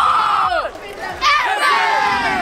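A group of school students shouting and cheering together in two loud bursts, with a short break about a third of the way in.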